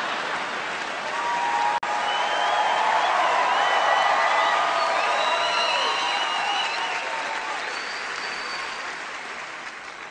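A large audience applauding, with a few pitched cheers or whoops rising above the clapping. There is a brief dropout just under two seconds in, and the applause slowly dies down toward the end.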